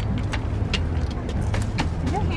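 A car engine idling, a steady low hum, with a few light clicks over it.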